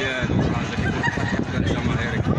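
Voices of a crowd outdoors, several people talking and calling out at once, with some raised, honk-like shouts.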